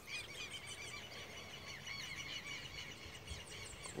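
Birds chirping: many short, high chirps repeating and overlapping, fairly faint.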